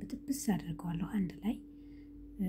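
Soft, low-voiced speech over a steady low hum; the talking stops about a second and a half in.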